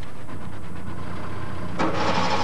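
Car engine idling, heard from inside the car as a steady low hum. Near the end a louder rushing noise joins it.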